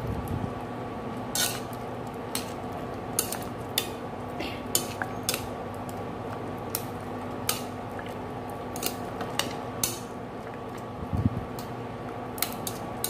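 Metal chopsticks clicking and scraping against a stainless steel pan as pieces of chicken are stirred in the braising liquid, with irregular taps about once or twice a second. A steady hum runs underneath, and there are low thuds at the start and near the end.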